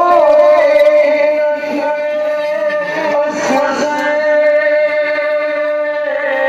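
A noha, a Shia mourning chant, sung by a single voice in long held notes. The notes waver with vibrato at the start and are held steady after that.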